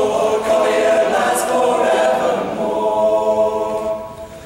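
Men's a cappella group singing in close harmony, ending on a held chord in the last couple of seconds.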